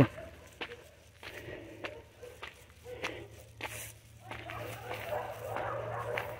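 Footsteps of a person walking on a dirt road, soft steps at a steady pace of a little under two a second.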